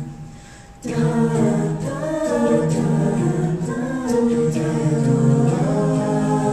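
A vocal jazz ensemble singing a cappella, a solo voice on a microphone over the group's chords. The sound drops away just after the start and the voices come back in together under a second later.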